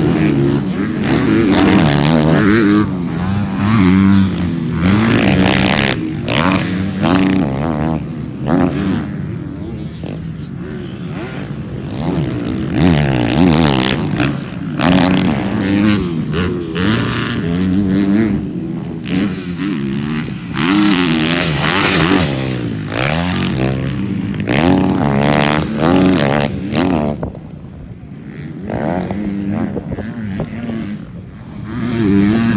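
Dirt bike engines revving on a motocross track, the pitch climbing and dropping again and again as the bikes accelerate, shift and back off.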